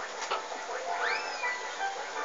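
Music playing in the background, with a single cat meow about a second in that rises quickly in pitch and then falls away.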